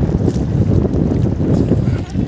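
Wind buffeting a phone's microphone on an open riverbank, a loud, unsteady low rumble.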